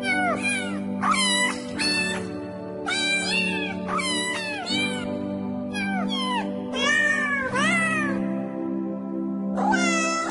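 Cats meowing over background music with held chords: high meows follow one another, a few each second, with a short pause near the end.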